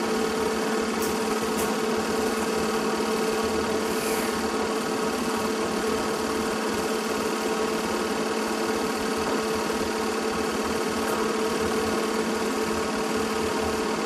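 Film projector running: a steady mechanical whir with a constant hum from its motor and film transport.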